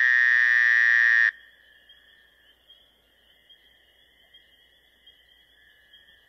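A loud electronic buzzing tone that cuts off about a second in, leaving a faint, steady, high-pitched ringing that holds for several seconds.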